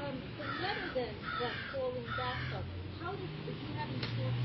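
A bird calling three times, harsh calls a little under a second apart, over faint voices in the background.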